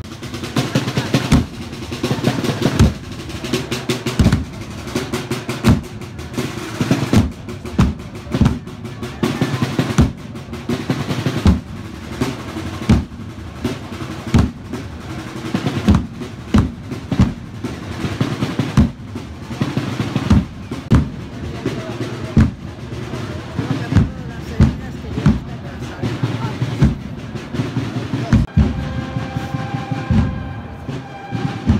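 Procession drum corps of snare drums and bass drums playing a slow march: heavy, regular strokes about every second and a half, with snare rolls filling between them. Near the end a steady high tone starts.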